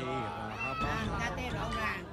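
Several people talking at once in high-pitched voices, with rising and falling calls.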